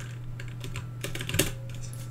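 Scattered, irregular clicks from a computer keyboard and mouse, about eight in two seconds, with one louder click past the middle, over a steady low electrical hum.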